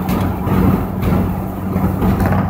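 Inside a moving car with its windows open: a steady rush of wind and road noise over a low, even engine drone.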